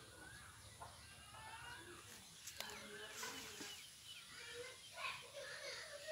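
Faint bird calls: scattered short chirping notes, a little louder in the second half.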